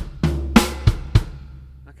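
Drum kit playing a slow bass-drum and snare phrase, the kick, kick, right, left, kick, kick sticking: a kick, two snare strokes, then two more kicks, about three strokes a second. The bass drum's low ring fades out over the last half second.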